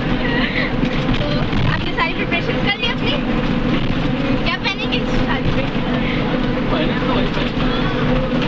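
Bus engine running with a steady low drone, heard inside the passenger cabin, with voices talking over it.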